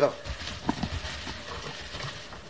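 A few light, irregular knocks in the first second, over a low rumble.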